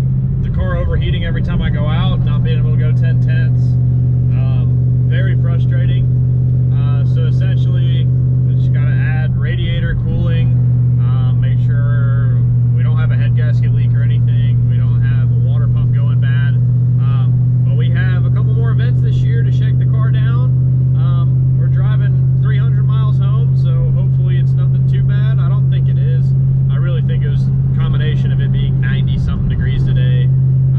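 Steady drone of an S197 Saleen Mustang GT's V8 holding an even pitch at a constant cruise, heard from inside the cabin.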